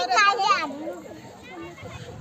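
A young child's high-pitched, excited vocal cry during the first half second, followed by faint, quieter voices.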